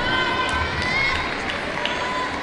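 A person's voice, rising and falling in pitch, over the steady noise of an arena crowd.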